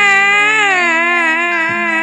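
A female tayub singer holding one long sung note with a wavering vibrato, sinking slightly in pitch about half a second in, over low sustained gamelan notes.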